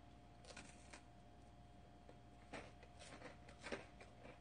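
Faint crunching of a crisp wafer snack being bitten and chewed, in short crackly bursts, a few about half a second in and a thicker run in the second half, loudest near the end. A faint steady electrical hum sits under it.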